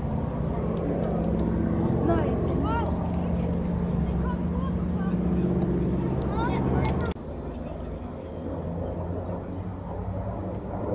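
Engine of a single-engine propeller warbird running steadily at low power as the plane rolls on grass, with short high chirps over it. The engine sound cuts off abruptly about seven seconds in, leaving a quieter outdoor background.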